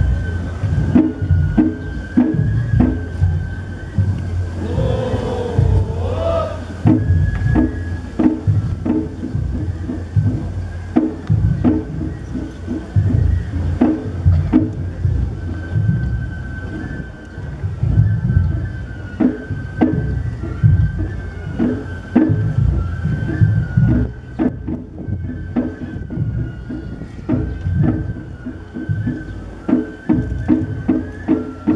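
Festival hayashi music accompanying a karakuri puppet performance: a bamboo flute holding high notes that step in pitch, over regular drum beats.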